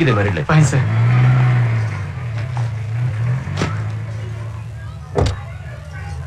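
A car engine running steadily with a low hum, with two sharp knocks about halfway through and near the end.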